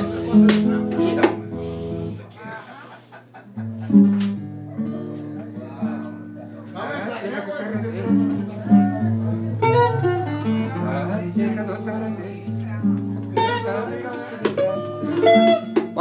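Acoustic guitar playing plucked notes and strums, pausing briefly a couple of seconds in, with a voice heard over it at times.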